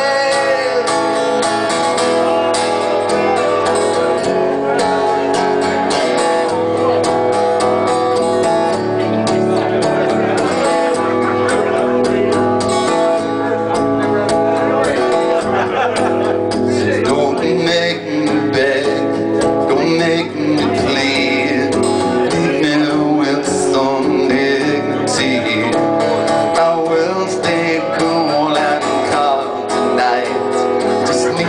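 Amplified acoustic guitar strummed hard and continuously in a long instrumental passage of a folk song, played live.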